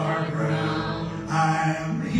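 Live acoustic band music: a sustained, chant-like lead melody over piano and electric bass, with the held notes shifting pitch about two-thirds of the way through.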